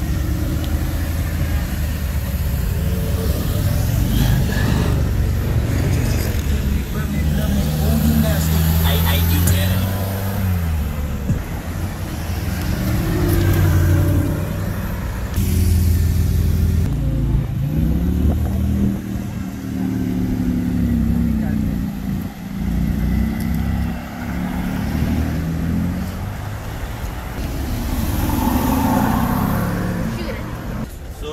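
Sports car engines revving and accelerating in street traffic: deep engine notes that rise and fall in pitch several times.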